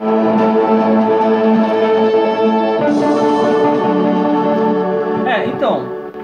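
A MIDI arrangement played back through Hypersonic 2 sampled virtual instruments in Nuendo, with sustained synth and keyboard chords. It starts abruptly and changes chord about three seconds in.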